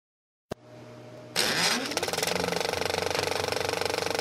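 An engine starting: a faint hum, then a sudden loud catch about a third of the way in with a rising pitch, settling into a steady rapid beat of about ten pulses a second.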